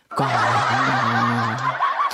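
A man singing "kau" into a microphone, holding one long, steady note for about a second and a half.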